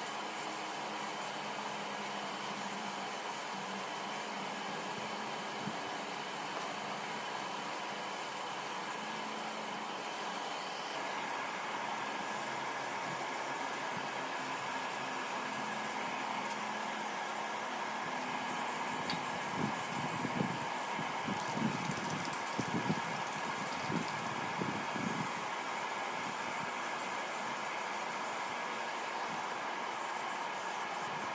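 A steady mechanical hum and hiss, like a running fan, with a few soft low knocks about twenty to twenty-five seconds in.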